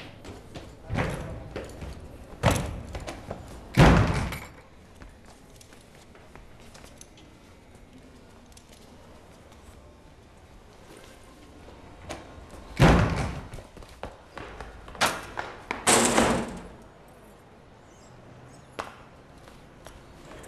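Doors banging shut and other dull thuds: about seven separate impacts with quiet gaps between them, the loudest about four seconds in and again about thirteen seconds in.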